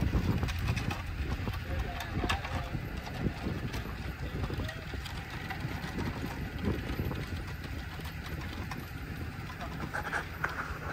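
Outdoor construction-site ambience: wind buffeting the microphone as a low, uneven rumble, with faint voices and a few sharp clicks, the clearest about two seconds in.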